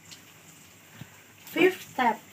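A short vocal sound from a woman's voice near the end, a brief word or exclamation, after a quiet stretch with one faint click about a second in.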